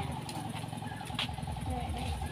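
A low, steady motor hum, with a few short bits of voices over it.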